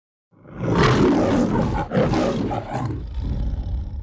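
The MGM studio logo's lion roaring: a run of rough roars starting about half a second in, with two short breaks between them, ending abruptly.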